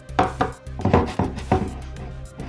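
A handful of light knocks and clinks as a glass jug and a heavy marble mortar are handled on a stone countertop, over background music.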